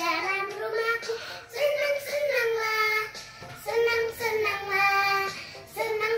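A young girl singing a children's song in several phrases, holding long notes.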